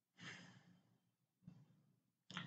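Near silence, with one faint breath or sigh into the microphone about a quarter of a second in.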